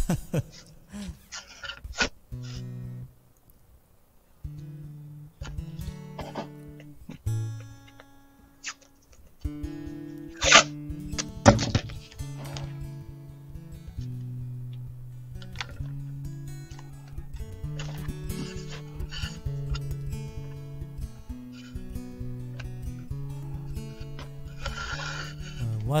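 Acoustic guitar played softly between songs, picked notes changing pitch, with a brief laugh at the start and a few short scraping noises along the way.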